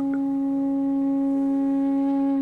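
A steady, unchanging drone tone with a few overtones, a meditative background music bed.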